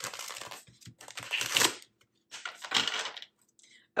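A deck of tarot cards being riffle-shuffled three times. Each riffle is a rapid run of card flicks lasting under a second.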